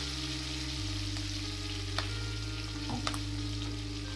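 Sliced green chillies frying in hot oil in a steel kadhai on low flame: a steady soft sizzle with a couple of faint pops.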